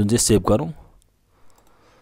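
A man's voice speaking Nepali for under a second, then a quiet pause with one faint click from the computer about a second and a half in.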